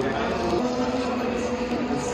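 Racing car engine running on the circuit, a steady engine note with slight shifts in pitch, heard over crowd voices.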